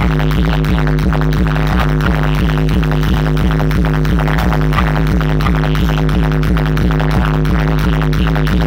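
Bass-heavy electronic DJ music played loud over a large outdoor sound system: a deep sustained bass under a fast, even pulsing beat and repeating synth notes, with no vocals.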